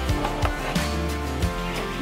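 Background music with sustained bass notes and a light beat.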